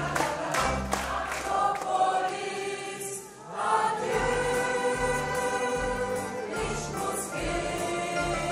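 Mixed choir of women's and men's voices singing a schlager song over an accompaniment with a low, pulsing bass. The singing dips briefly about three seconds in, then carries on.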